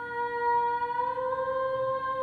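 A woman's voice holding one long sung note in an a cappella arrangement, stepping up slightly in pitch about a second in, over a fainter steady lower held tone.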